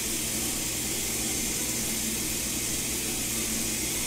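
Kitchen sink faucet running into a cooking pot, filling it with water: a steady rushing hiss.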